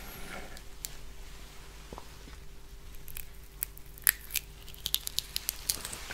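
Close-miked chewing of rambutan fruit flesh: soft wet mouth clicks and smacks, sparse at first and coming more often in the second half.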